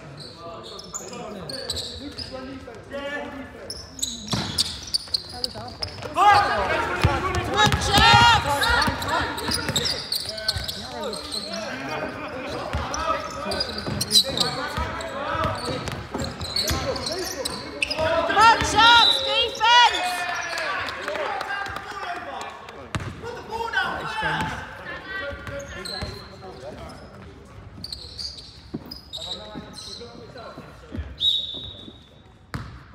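Live basketball play on an indoor wooden court: a basketball bouncing and thudding, with bursts of sneakers squeaking on the floor about six seconds in and again near twenty seconds, and voices calling out in the echoing hall.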